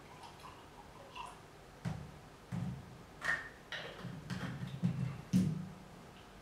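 Quiet handling sounds of a small drink bottle and a ceramic mug as iced coffee is poured into the mug and the bottle is set down on the table: a few faint ticks, then a string of short knocks and clinks from about two seconds in.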